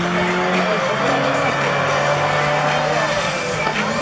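Rallycross cars racing on a loose-surface circuit, engines running hard as they come through a corner, with music from the track's loudspeakers mixed in.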